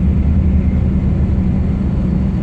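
Heavy truck's diesel engine running steadily, a low drone heard from inside the cab.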